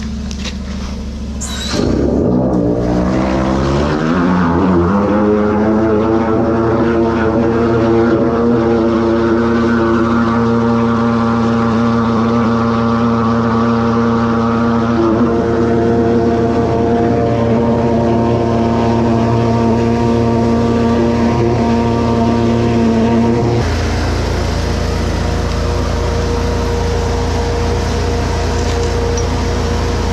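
A drain jetter running at high pressure as its jetting hose works in a blocked drain: about two seconds in, a rising tone comes up to speed and settles into a steady hum. A little past two-thirds of the way through the tone drops away, leaving a steady rumble.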